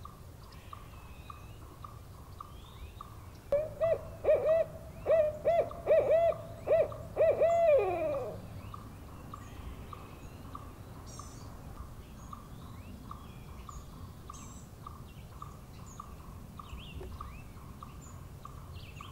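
Barred owl hooting: a run of about ten hoots starting about three and a half seconds in and lasting some five seconds, the last one drawn out and sliding down in pitch. A faint high pulsing call, about four pulses a second, runs on underneath, with a few small bird chirps.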